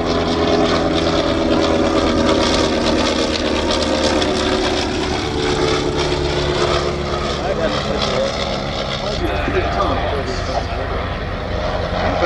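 Rotary engines of Sopwith First World War scouts (Pup and Triplane) running in flight, a steady droning engine note, with airshow public-address commentary faintly in the background.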